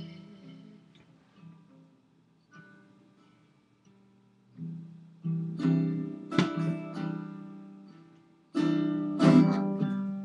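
Solo guitar strummed in an instrumental break: a chord rings out and fades almost to nothing for a few seconds, then strumming starts again about halfway through and comes in louder near the end.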